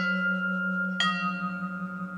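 Vibraphone bars struck with mallets, their notes ringing on long: one new chord rings out about a second in, over a steady low held tone.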